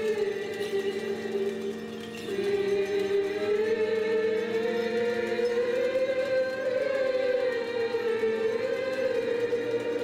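Choir singing Armenian Church liturgical chant: a slow, sustained melody over a steady low held note, the melody rising to its highest point about six to seven seconds in and then falling back.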